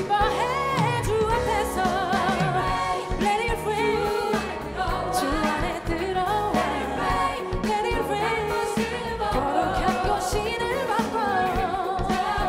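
Live gospel worship song: a female lead singer with a mass choir over a live band of electric guitar, keyboard, bass and drums.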